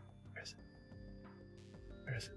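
Faint movie-trailer soundtrack: sustained music with brief snatches of dialogue.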